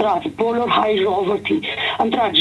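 Speech only: a person talking continuously.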